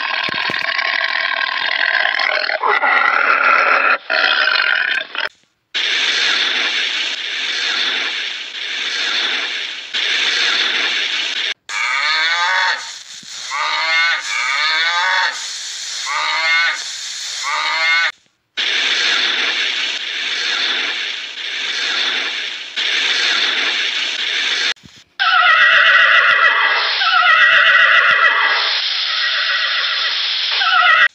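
A string of different animal calls, one clip after another with short breaks between them. It includes harsh, rasping cries and a run of short pitched calls about once a second. Near the end come several calls that fall in pitch, typical of horses whinnying.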